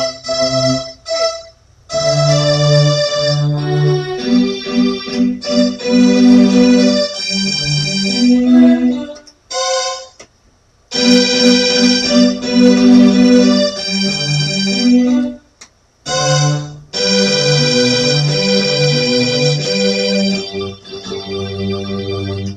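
Electronic keyboard played four hands by two players, phrases of held notes and chords in a low and a high part, stopping briefly three times before carrying on.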